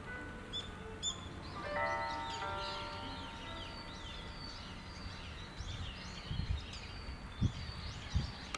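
Many small birds chirping and calling, a dense run of short high chirps that sweep up and down in pitch, with soft steady musical tones underneath.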